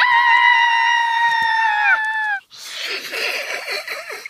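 A girl's long, high-pitched scream, held steady for about two seconds and falling in pitch as it breaks off, followed by a fainter rough, breathy noise.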